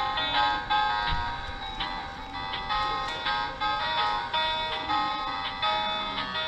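Tinny electronic melody played by a light-up musical Snoopy plush toy, its notes changing a few times a second.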